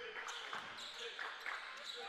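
Faint gym sound of a basketball game: a ball being dribbled on the hardwood court under distant, indistinct voices.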